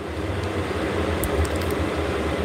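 Low, steady rumbling noise of a passing vehicle. It builds up just before and holds through, with a few faint clicks near the middle.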